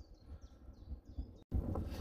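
A few faint, short, high bird chirps over a low rumble of wind on the microphone; the sound drops out for an instant about a second and a half in, and the wind rumble returns louder.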